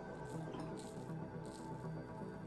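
Leaf Twig safety razor scraping through lathered chin stubble in a few short strokes, over soft background music.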